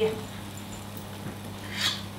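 Quiet kitchen room tone with a low steady hum, and one brief soft hiss near the end.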